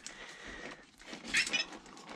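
Faint handling noise of the RC truck's plastic front end and suspension being worked loose from the chassis, with a brief high squeak or scrape about one and a half seconds in.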